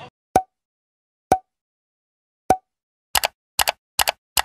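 Short pop sound effects from an animated end screen, with dead silence between them. Three single pops come about a second apart, then quick double pops near the end.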